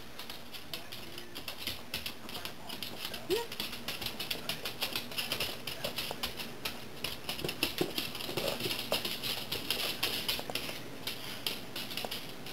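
A dog's claws clicking on a hardwood floor as it walks and turns. The taps come in a rapid, irregular patter that is busiest in the middle and thins out near the end.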